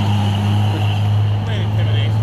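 A vehicle engine idling with a steady low hum.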